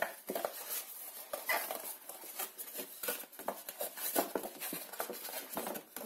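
White card being folded and pinched along its score lines by hand, with irregular crackling and rustling of the paper.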